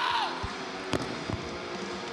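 A sharp knock about a second in, with a couple of duller thumps around it, over steady arena crowd noise.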